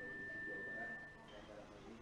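A faint steady high-pitched tone that cuts off a little over a second in, over faint low background sound.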